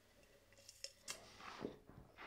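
Faint mouth sounds of a taster sipping sparkling wine and working it round the mouth: a few soft clicks and short hissy slurps, about a second in and again near the end.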